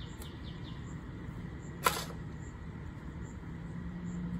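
A metal spade digging garden soil: one sharp clink with a short ring about two seconds in, as the blade strikes something hard in the ground. A few brief bird chirps sound near the start over a low steady hum.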